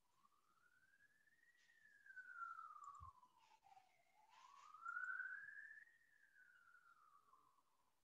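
Faint wailing siren, a single tone rising and falling slowly twice, with a soft low knock about three seconds in.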